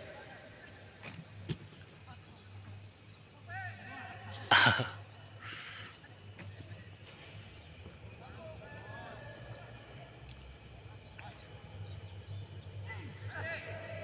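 Distant shouts and calls of footballers playing a training game, over a low steady hum. One loud, sharp sound comes about four and a half seconds in.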